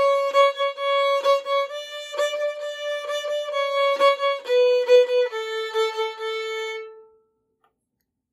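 Violin played with shuffle bowing on the A string: a phrase of quickly repeated notes in a long-short-short bow pattern, holding one pitch, then stepping down twice to a lower note that is held and stops about seven seconds in.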